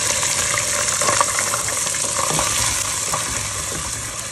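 Garlic-ginger paste sizzling hard in hot oil with fried onions in a pot, just after it goes in, easing a little towards the end. A few light knocks of a wooden spoon against the pot as it is stirred.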